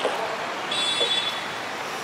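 Street traffic noise from motor scooters and other vehicles passing, a steady hum with no single loud event. Near the middle comes a brief high-pitched tone lasting under a second.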